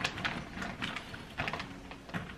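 Hollow plastic ball-pit balls clicking and clattering against each other as they are put by hand into a clear vinyl storage bag: a run of irregular light clicks.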